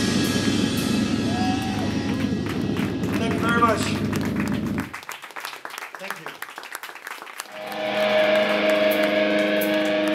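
Hardcore punk band playing loud and fast until the full band cuts off suddenly about halfway. After a couple of seconds of sparse clicks, a held guitar chord rings steadily and grows louder.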